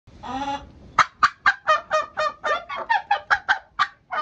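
Domestic turkey gobbling: a short opening call, then a rapid run of about a dozen quick notes at about four to five a second.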